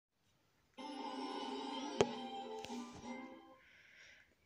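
A short musical jingle of held chords from a TV channel's 'coming up' bumper, starting about three-quarters of a second in and fading out near the end. A sharp click, the loudest moment, cuts through it about two seconds in, with a weaker one shortly after.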